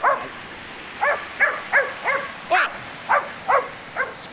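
Small dog barking in short, high yaps, about seven in four seconds, several in quick succession in the middle, ignoring its owner's calls to be quiet.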